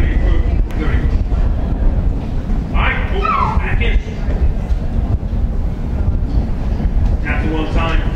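Polo ponies galloping on turf: a dense low rumble of hoofbeats. A voice calls out briefly about three seconds in.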